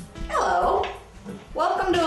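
A woman's voice speaking over the tail end of acoustic guitar music.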